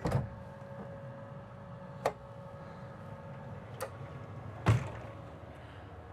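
Wooden pocket door being slid open along its track, giving a few sharp knocks and clicks, the loudest a little before the end. A steady hum runs underneath.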